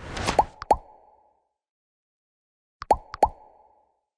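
End-screen animation sound effects: a short whoosh, then two quick pops that rise in pitch and ring briefly. After a silent gap, another pair of the same pops comes about three seconds in.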